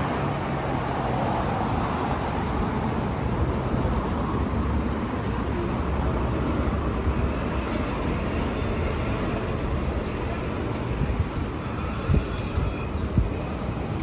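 Road traffic on a busy city street: cars passing in a steady hum of engines and tyres, with a couple of short knocks near the end.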